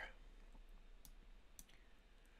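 Near silence with a few faint computer mouse clicks as a node is placed in software.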